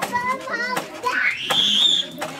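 Young children's high-pitched voices: two short calls, then a long squeal that rises steeply in pitch and holds high to the end.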